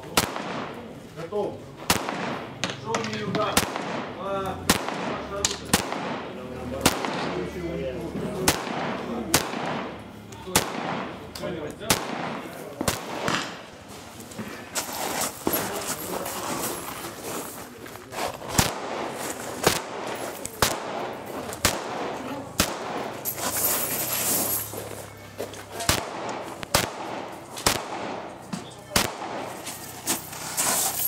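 Rifle shots fired one at a time at an uneven pace, roughly one a second with some quicker pairs, on a practical-shooting course of fire.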